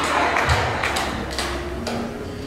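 A handheld microphone being handled: a few soft thumps and taps over a low rumble.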